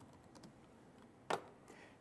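Faint keystrokes on a computer keyboard, with one sharper key press a little over a second in.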